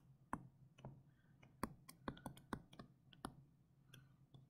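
Faint, irregular light clicks, about fifteen in four seconds and bunched in the middle, from a stylus tapping and stroking on a tablet as words are handwritten.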